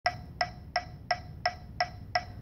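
Metronome clicking a steady beat, about three clicks a second, six identical clicks with a short bright ring: a count-in before the brass playing starts.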